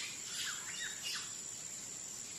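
A few short bird chirps, each falling in pitch, in the first second or so, over a steady high-pitched whine.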